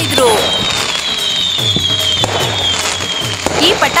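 Cartoon sound effect of a row of firecrackers going off: a noisy crackle with a run of quick pops, and a long high whistle slowly falling in pitch.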